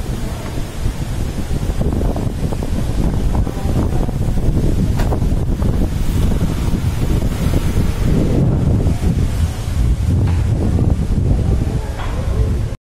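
Loud, gusty wind noise buffeting the microphone, a heavy rumble that rises and falls throughout.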